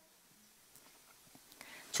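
Near silence with faint room hiss in a pause between spoken prayer lines, a faint breath near the end, then a woman's voice starting again at the very end.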